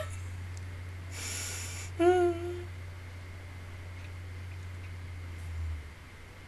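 A woman's breath out through the nose, then a brief hummed vocal sound about two seconds in, over a steady low hum that stops near the end.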